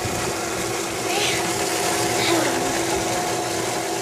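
Water running from a tap and hose into a tank, over a steady hum, with brief children's voices in the middle.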